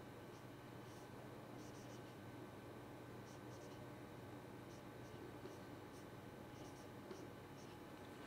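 Faint felt-tip marker strokes on a whiteboard: a string of brief, light squeaks and scratches as an equation is written, over low room hiss.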